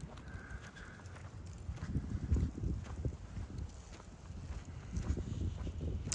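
Footsteps of a walker on a concrete sidewalk, soft irregular thuds over a low steady rumble.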